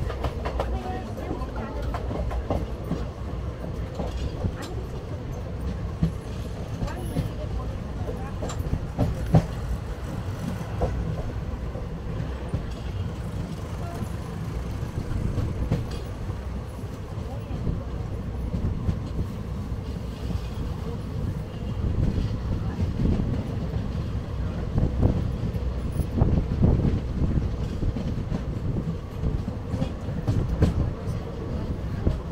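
Passenger train running along the track, heard from inside a coach: a steady rumble of wheels on rail with scattered clicks and clatter from the rail joints, growing a little louder in the second half.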